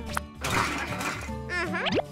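Cartoon sound effects over background music: a click, then about a second of noisy clatter as a bag of cans goes into a recycling machine, and a quick rising whistle near the end.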